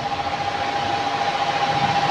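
Electric wall fan running steadily: an even hiss with a constant high whine and a fast, regular flutter.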